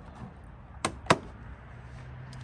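Two sharp plastic clicks about a quarter of a second apart, the second louder, as the aftermarket front bumper's loose scoop trim is pressed back into its push-pin clips.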